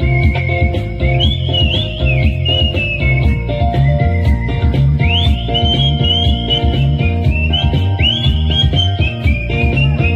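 A melody whistled by mouth into a microphone and amplified over a backing track with a steady bass beat. The whistled line sits high and swoops up into its top notes several times.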